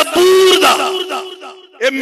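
A man's voice through a loudspeaker holding one long, drawn-out call on a steady pitch. It fades away about three-quarters of the way in, then speech starts again.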